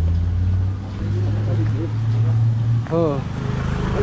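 A vehicle engine idling: a steady low hum that rises slightly in pitch about a second in. A man's short voice comes in near the end.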